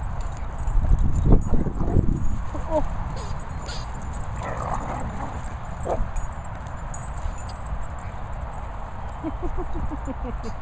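Dogs playing rough together, with scuffling, thuds and a few short yips, over a steady low rumble.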